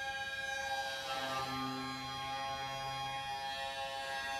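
Hurdy-gurdy and alto saxophone in free improvisation, holding steady layered drone tones. A lower held note enters about a second in and drops away after about three seconds.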